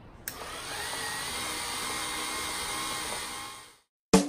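Steady whir of a small electric motor. It starts suddenly, its pitch rises over the first second as it spins up, and it stops abruptly just before the end.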